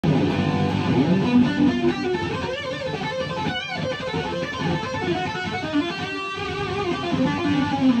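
Electric guitar playing a fast lead lick in A minor, a continuous run of rapidly changing notes.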